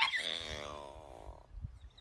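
A dog's long, drawn-out howling whine, falling in pitch and fading out over about a second and a half: the dog 'talking back' while being scolded.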